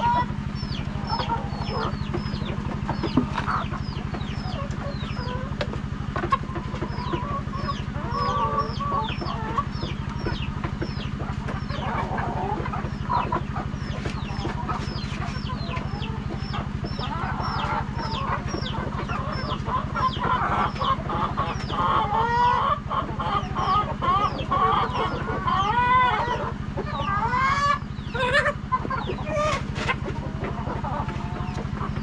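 A flock of laying hens clucking and squawking, louder and busier in the second half, with a quick run of thin high peeps, a few a second, through the first half.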